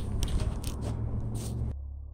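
Scraping, rustling and a few sharp clicks from a hand-held camera being carried while its operator climbs. The sound cuts off suddenly near the end, leaving only a faint low hum.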